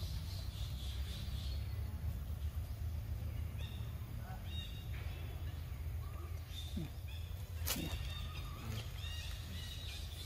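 Short, high-pitched squeaky animal calls repeating at irregular intervals, more often in the second half, over a steady low rumble, with one sharp click about three-quarters of the way through.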